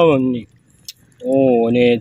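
A man speaking, with a short pause in the middle that holds a single sharp click.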